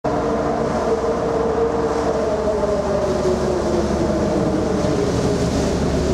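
A ferry's engines running, a steady drone with a low rumble and several hum tones that slowly fall in pitch, over wind and water noise.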